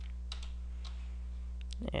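A handful of light clicks from a computer keyboard and mouse, as text is copied and pasted, over a steady low electrical hum.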